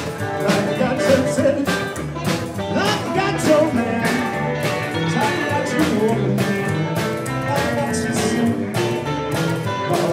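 Rockabilly band playing live with no vocals: a hollow-body electric guitar takes the lead, with some bent notes, over upright bass and a steady drum beat.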